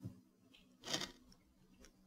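Near silence from a noise-gated voice recording playing back, broken by a faint click at the start and a brief soft hiss about a second in.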